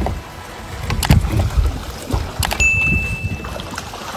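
Water splashing and sloshing beside a small fishing boat, with wind on the microphone and a few sharp knocks against the boat. About two and a half seconds in, a thin, steady high beep sounds for about a second.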